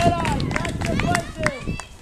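A group of children calling out and shouting over one another, with several sharp clacks scattered through.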